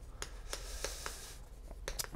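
Chalk writing on a chalkboard: a few light taps of the chalk and a faint scratchy stroke across the board.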